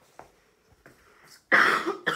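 A person coughing: one sudden harsh cough near the end, after a quiet stretch with only a few faint clicks.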